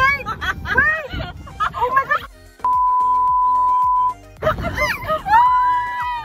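Several people shrieking and laughing with sliding, rising-and-falling cries as they ride down a steep slope, over background music; midway a steady high-pitched beep lasts about a second and a half.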